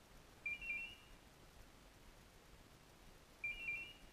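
Hunting dog's electronic beeper collar sounding a short warbling two-tone beep twice, about three seconds apart.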